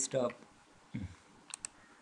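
Two quick, sharp computer-mouse clicks close together about one and a half seconds in, opening a web link; a short low sound comes just before them.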